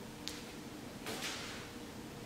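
Faint movement sounds of a person exercising on a rubber floor mat: a small tick, then about a second in a short swish of clothing and skin brushing the mat as the arm sweeps under the body.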